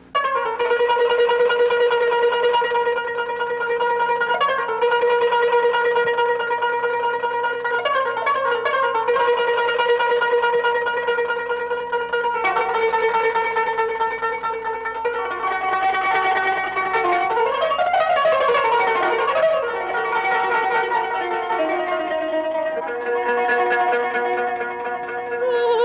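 Kanun, the Middle Eastern plucked zither, played with finger picks, opening an Armenian song without voice. It plays long held notes that move to new pitches every few seconds, with a swooping phrase about three-quarters of the way through.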